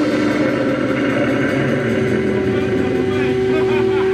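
Live heavy rock band's distorted electric guitar and bass holding a loud, noisy drone, with a steady feedback-like tone held underneath and no clear drum beat.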